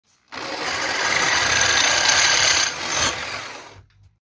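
Drill press cutting a hole through a flat steel bar clamped in its vise: a loud grinding cut with a high whine over it, easing off a little past halfway, a short last bite, then winding down just before the end.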